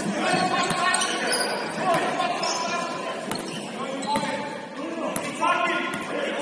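Basketball being dribbled on a hardwood gym floor, a bounce roughly every second at an uneven pace, each bounce echoing in a large hall.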